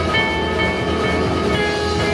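Live rock band playing loudly: amplified guitars holding sustained chords over bass and drums.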